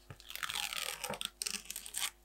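A washi sticker strip being peeled off its paper backing sheet: a continuous crackling peel that starts about a quarter second in and lasts to the end.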